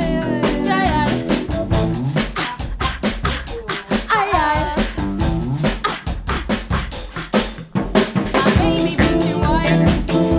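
A rock band playing live: drum kit keeping a steady beat over electric guitar, bass and keyboard.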